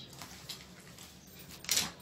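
Faint rustling of cloth as an embroidered fabric piece is handled, with a short, louder burst of hissing noise near the end.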